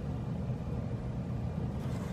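Steady low hum of room background noise, with no other distinct event.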